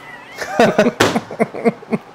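Laughter: a quick run of short 'ha' bursts, about five a second, beginning about half a second in.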